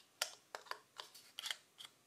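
A folded piece of paper scraping excess flocking fibres off a freshly flocked doll head: short, quick scratchy strokes, about four a second.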